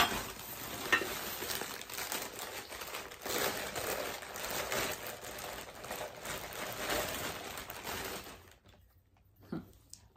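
Plastic or paper wrapping rustling and crinkling with small clicks as items are unwrapped by hand. It stops about a second and a half before the end, followed by one small knock.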